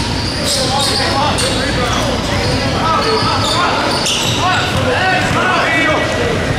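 Sneakers squeaking on a hardwood basketball court, many short chirps coming in quick succession as players change direction, with a basketball bouncing and hitting the floor among them, in a large gym.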